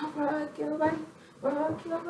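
A high-pitched voice singing a melodic line of held notes, in two short phrases with a brief break between them.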